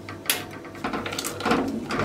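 Wooden spoon knocking and scraping in a saucepan as chunks of dark chocolate are stirred into hot cream: a few separate knocks.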